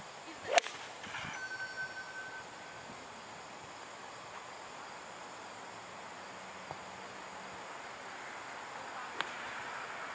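Golf club striking a ball off a practice mat: one sharp crack about half a second in, followed by quiet outdoor background with a couple of faint ticks later on.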